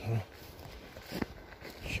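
Footsteps and brushing through low forest undergrowth, with one sharp click about a second in.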